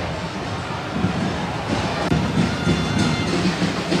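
Football stadium crowd noise, a steady dense din, with a background music bed underneath.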